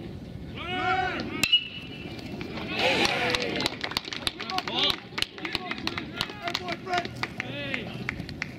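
A bat cracks against a pitched baseball about one and a half seconds in, with a brief ring after the hit. Players shout and call out before and after the hit as the ball is fielded.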